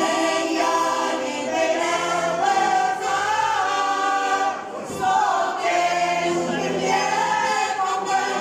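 Two women singing a folk song together in full voice, accompanied by a piano accordion, with a short break between phrases about halfway through.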